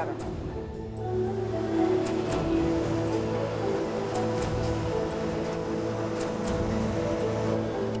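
Background music of sustained, slowly changing notes over a steady low bass.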